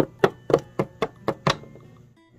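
Small plastic toy figurines hopped across a tabletop, their feet tapping the surface in a quick even run of knocks, about four a second, that stops about one and a half seconds in.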